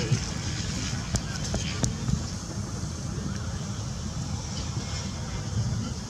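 Football struck by players' feet, two sharp kicks about a second apart early on, over a steady rumble of wind on the microphone.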